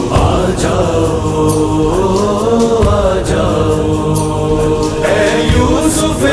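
Devotional Urdu manqabat: voices chanting long held sung lines in chorus, over a steady percussive beat.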